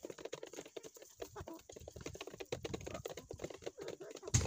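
Desi hens pecking feed from a rubber pan: rapid, irregular tapping clicks of beaks on feed and pan.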